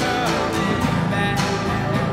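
A band playing a song on guitars, with sharp percussive hits falling at a regular beat.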